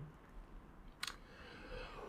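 Near silence with one short, sharp click about a second in: a computer click advancing the presentation slide.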